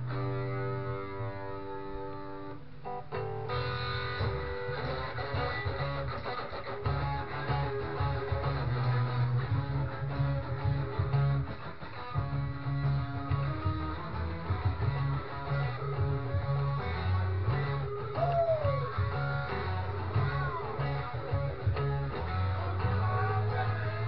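Electric guitar played through an amplifier: a chord rings for about three seconds, then a busier stream of picked notes and chords with low bass notes underneath. A note is bent down in pitch near the end.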